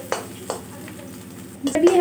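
Chopped onions frying in a pan while being stirred with a spatula, the spatula clicking against the pan a few times.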